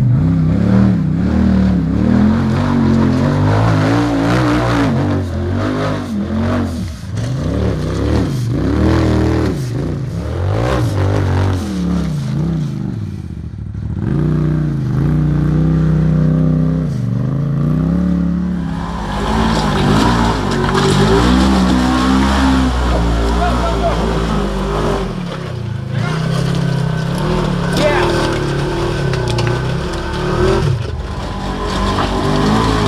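Off-road side-by-side engines revving up and easing off again and again while crawling up steep rock ledges.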